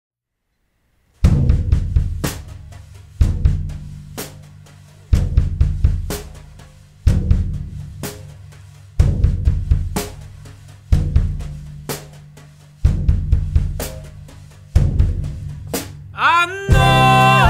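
Drum kit playing the song's intro beat alone: a one-bar pattern of kick drum, snare and hi-hat, starting about a second in and repeating roughly every two seconds.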